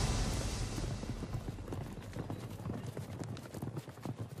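Hooves of several horses clopping at a walk over dirt and grass, a steady run of uneven hoof falls, as a low swell of music dies away in the first second.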